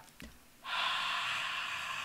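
A person breathing out one long open-mouthed huff onto an inked stamp, starting about half a second in and lasting about a second and a half. The warm, moist breath reactivates the ink on the stamp.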